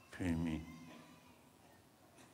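Only speech: a man's voice with a single drawn-out spoken syllable in the first half second, fading into a pause with faint hall tone.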